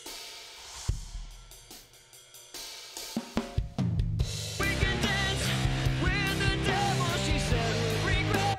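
Playback of a multitrack song with the drum track soloed: cymbals, hi-hat, snare and kick hits. About four and a half seconds in the music gets louder and fuller, with sustained pitched parts joining the drums.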